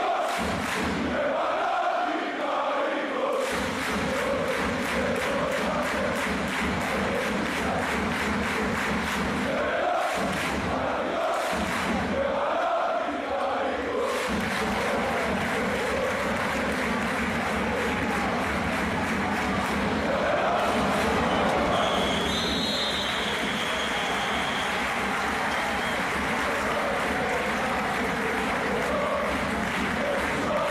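Basketball crowd in an indoor gym chanting together, with a fast, even beat of claps or drums for several seconds early on. A short high electronic tone sounds about two-thirds of the way through.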